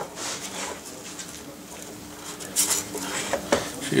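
Quiet scratching and shuffling of a three-day-old puppy moving on a hard plastic weighing tray, with a sharp click about three and a half seconds in, over a faint steady hum.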